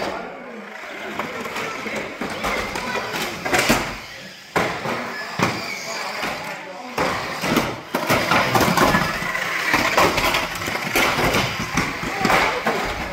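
Radio-controlled banger cars knocking into each other and the track's wooden boards, a few sharp knocks spread through, over a steady background of voices echoing in a hall.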